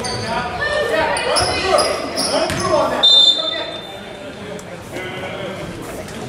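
Voices shouting and calling out in an echoing gym, then a short referee's whistle blast about three seconds in, stopping play.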